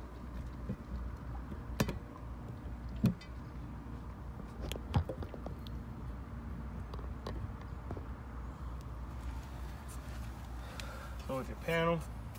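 A steady low hum, with a few short sharp clicks and knocks scattered through it.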